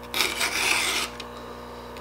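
Stihl 2 in 1 Easy File, a round and flat file in one guide, pushed once across a saw-chain cutter held in a vise: a single rasping file stroke lasting about a second, sharpening the chain.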